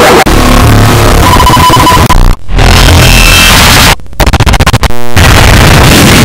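Extremely loud, distorted noise-and-music mix, clipped at full volume. It is chopped by abrupt dropouts about two and a half seconds in and again at four seconds, followed by a rapid stuttering cut-up just before the fifth second.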